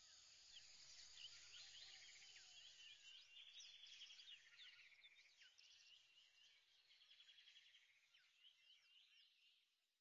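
Near silence with faint birds chirping and trilling, which fade out about halfway through.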